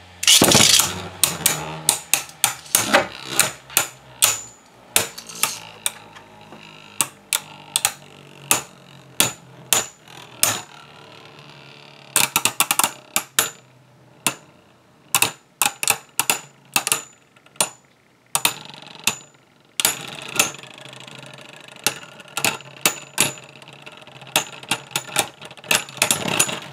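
Two Hasbro Beyblade Burst tops, Kerbeus K2 and Yegdrion Y2, spinning in a plastic Beystadium and clashing again and again. Their collisions make sharp plastic clicks and knocks that come in quick runs with short lulls between, after a loud burst right at the start.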